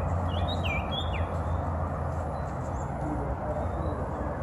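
A common iora calling: a few short, curved whistled notes in about the first second, then only a steady low background hum.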